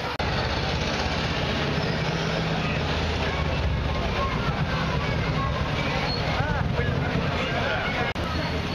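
A motorcycle engine running at idle, a steady low rumble, with people talking around it.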